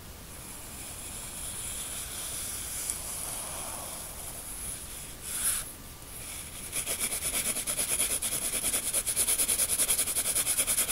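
Pencil scratching on drawing paper. First a steady drawn line, then a brief louder scratch about halfway, then from about seven seconds fast, even back-and-forth shading strokes.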